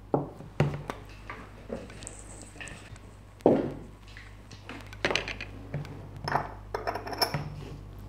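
Clicks and clinks of a small clip-top dye jar being handled on a table, with its wire-clasp lid being opened, and a sharper knock about three and a half seconds in as the jar is set down.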